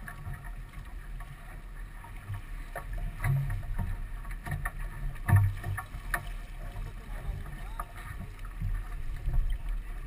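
A sailboat under way: water rushing along the hull and wind buffeting the deck-mounted camera's microphone as a low rumble, with scattered knocks and clicks from the crew handling lines and deck gear. The loudest knock comes about five seconds in.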